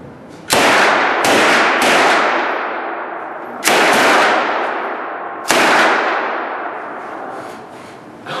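Rifle shots fired on an indoor shooting range: five shots at irregular intervals, three close together near the start and then two more spaced about two seconds apart. Each shot is followed by a long echoing reverberation that slowly fades.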